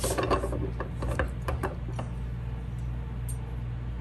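Pliers gripping and bending a silverware fork's tines: a run of small metal clicks and rubs over the first two seconds, then only a steady low hum.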